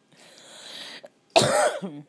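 A person laughing and coughing: a long breathy exhale, then a loud cough about a second and a half in that trails off into a falling laugh.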